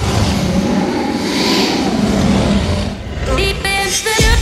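Hardstyle dance music: a loud noise build-up over heavy rumbling bass, with a synth lead melody coming in near the end.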